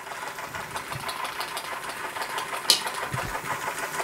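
Linemar toy steam engine running under steam, its small cylinder and flywheel making a rapid, even beat. A single sharp click about two-thirds of the way through.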